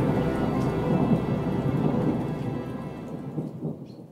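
Soundtrack of the reading, with no voice: a dark ambient bed of low rumble and rain-like noise with faint sustained tones, fading out steadily over the last couple of seconds.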